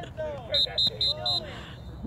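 Four short, high electronic beeps in quick succession, about four a second, starting about half a second in.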